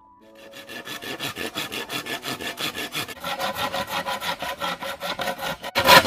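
Handsaw sawing through a green bamboo pole in rapid, even back-and-forth strokes. The strokes fade in over the first second and break off briefly near the end before louder strokes resume.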